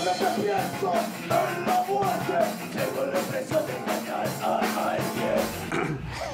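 A rock band playing, with a male lead vocalist singing into a microphone over a fast, steady drum beat.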